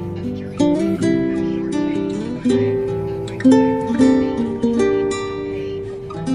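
Background music of plucked and strummed acoustic guitar, a run of ringing notes and chords.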